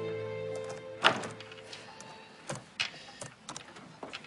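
Soft background music fading out within the first second, then a handful of sharp clicks and knocks, the loudest about a second in: the handle and latch of a wooden door being worked as it is opened.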